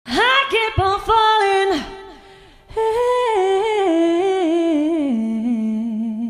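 A woman singing unaccompanied: a few short notes, a brief pause, then a long run that steps down in pitch and settles on a low note with vibrato near the end.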